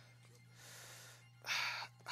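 A man breathing in sharply at the microphone about one and a half seconds in, before speaking, after a quieter breath. A low steady hum runs underneath.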